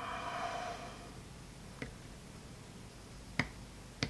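Sharp clicks of small metal parts while a screwdriver is set to a grip-plate screw on a small pistol frame: a faint click about two seconds in, then a louder one near the end.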